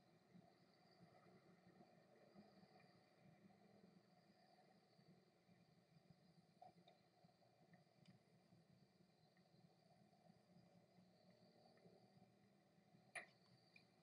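Near silence: faint room tone, with one short click near the end.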